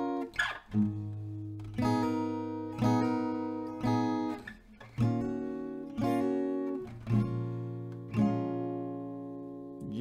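Acoustic guitar with a capo on the first fret, played slowly: single downstroked chords about once a second, each left to ring and fade before the next.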